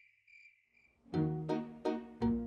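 Crickets chirping faintly in short repeated chirps, then about a second in a plucked-string background tune starts with sharp, bouncy notes about three a second, which is much louder.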